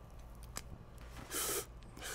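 Faint steady low hum, with one short breathy hiss about one and a half seconds in.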